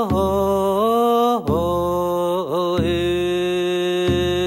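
Chanted canoe arrival song: a single voice holds long notes that step between a few pitches, with short breaks between phrases.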